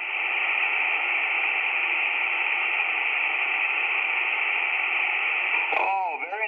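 Shortwave receiver hiss on single sideband: a Tecsun PL-330 tuned to the 20-metre amateur band in USB gives steady, band-limited static with no readable voice. A brief click comes just before the end.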